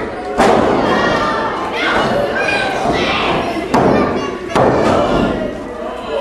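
Heavy thuds on a wrestling ring's mat: a top-rope dive landing about half a second in, then several more thuds a second or so apart, over shouting voices.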